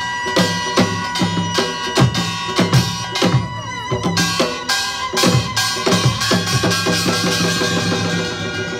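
Korean traditional music accompanying a fan dance: a drum beats a steady rhythm of about two to three strokes a second under a held melodic line.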